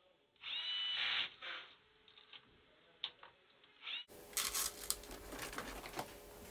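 Electric screwdriver driving a screw into a synthesizer circuit board: a short whine that rises as the motor starts and lasts under a second, then a brief second burst and a couple of light clicks. Near the end come small clicks and rattles of tools being handled.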